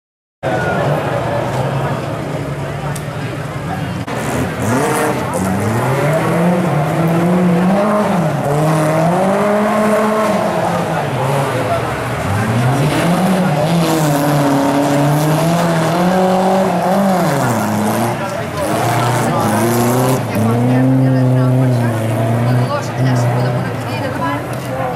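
A classic rally car's engine revving hard and falling back again and again as it is driven around a dirt course, its pitch rising and dropping every second or two. It starts just after a brief silence.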